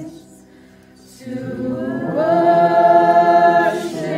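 A small group of women singing a worship song together. The voices drop away briefly at the start, come back in after about a second, then hold one long note before moving on.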